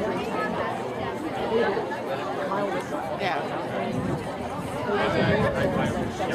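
Several people chatting at once, voices overlapping, none of it clear speech.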